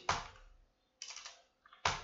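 Computer keyboard being typed on: a few separate keystrokes, a quick run of several about a second in, and a sharper one near the end.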